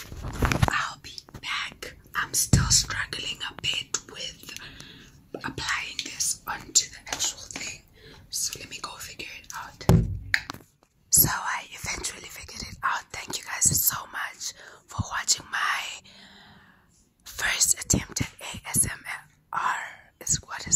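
A woman whispering close to the microphone in ASMR style, broken by many short clicks, with two brief pauses.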